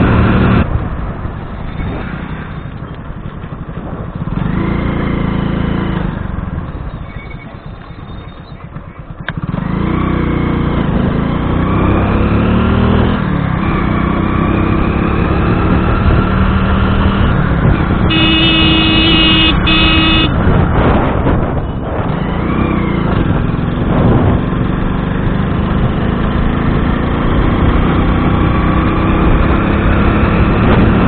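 Motorcycle engine running on the move, its pitch rising and falling with the throttle. It eases off and goes quieter a few seconds in, then picks up again. About eighteen seconds in, the horn sounds twice in quick succession.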